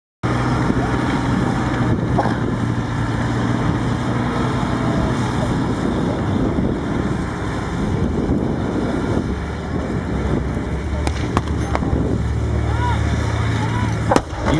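Sherman tank engines running with a steady low drone as the tanks drive past, the note shifting about nine seconds in, heard over crowd chatter and wind on the microphone.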